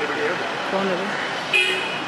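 A short car horn toot about one and a half seconds in, over background voices.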